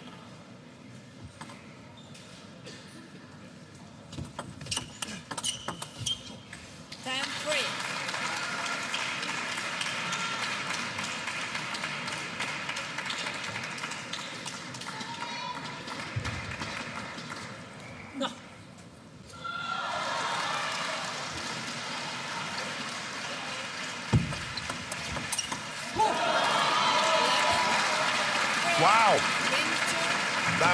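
Table tennis rally, the ball knocking back and forth off bats and table for a few seconds, then the crowd cheering and applauding from about seven seconds in as the game is won, with a brief lull, and shouting voices over the crowd near the end.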